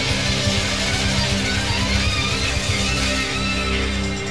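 Rock song in an instrumental passage: guitar-led band music with a full low end, and a wavering high lead line in the second half.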